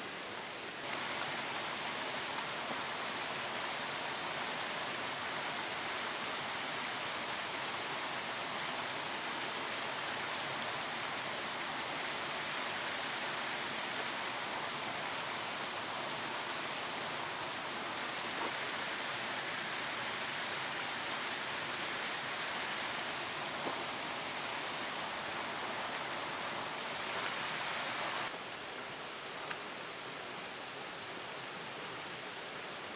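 Steady rushing water of a small waterfall and gorge stream. It gets louder and brighter about a second in and drops back down near the end.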